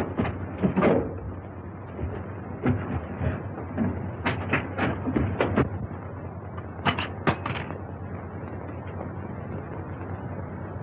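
A scattered series of short knocks and clicks, bunched near the start and again between about four and eight seconds in, over the steady hum and hiss of an old film soundtrack.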